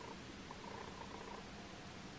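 Faint, steady low hum over quiet room noise.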